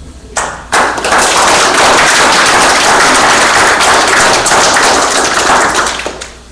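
Applause from a church congregation: a few first claps under a second in, then dense clapping that dies away near the end.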